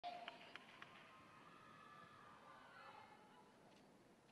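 Near silence with faint, distant voices in the first three seconds and a few light clicks near the start.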